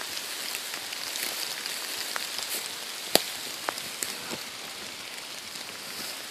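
Steady patter of rain falling on leaf litter and foliage, with scattered small ticks and one sharp click about three seconds in.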